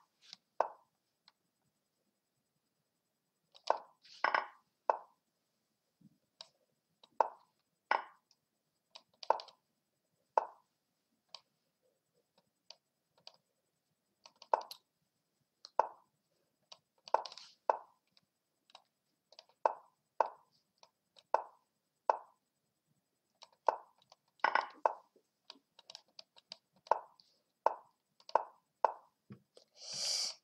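Lichess chess-site move sound effects, short wooden clacks as pieces are placed. They come irregularly about once a second, sometimes in quick pairs, as both sides make moves in rapid succession.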